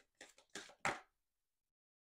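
Oracle card deck being shuffled by hand: three or four short card snaps in the first second, the last the loudest.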